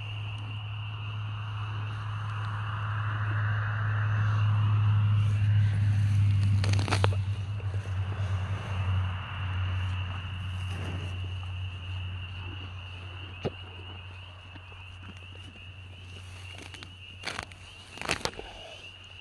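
Cow tearing and chewing grass taken from a hand, with small crackling and rustling sounds and a few sharp clicks, over a steady high insect drone and a low hum that swells for a few seconds and then fades.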